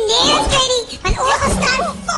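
High-pitched voices making wordless cries and exclamations, with a few short knocks among them.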